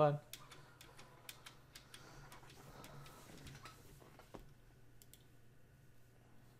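Faint clicks of keys on a computer keyboard, several in quick succession in the first two seconds, then a few more spaced out, over a low steady hum.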